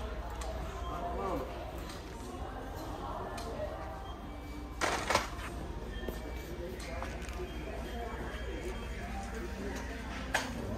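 Store ambience: indistinct voices with faint background music and a steady low hum, and one brief sharp burst of noise about five seconds in.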